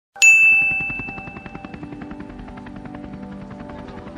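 A bell struck once near the start, with a clear high ring that fades away over about two seconds.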